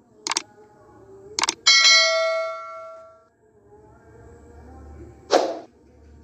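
Subscribe-button sound effects: two mouse clicks, then a bright notification bell ding that rings and fades over about a second and a half, and another short burst near the end.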